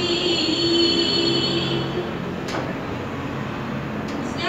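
A sung naat: one long held note, rich in overtones, that fades out about halfway, followed by a steady background hiss and a single click before the next phrase.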